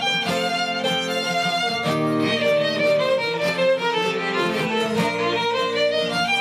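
A live violin and acoustic guitar duo playing an instrumental passage, the violin carrying the melody over the guitar's accompaniment.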